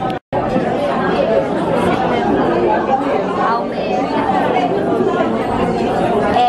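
Several people talking at once in a restaurant dining room, no single voice standing out. The sound cuts out completely for a moment just after the start.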